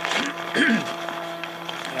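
A man coughs about half a second in, over a steady, even engine-like drone that holds one pitch throughout.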